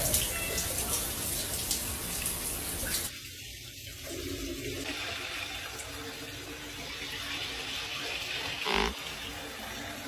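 Shower running: a steady hiss of water spray that drops in level about three seconds in, with a short louder sound near the end.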